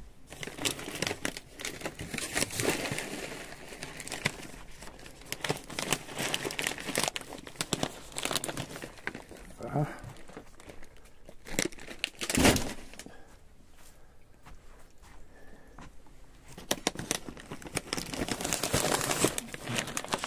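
Plastic packaging and a cardboard box rustling and crinkling as packs of cat food are handled and unpacked, with one loud thump about two-thirds of the way through.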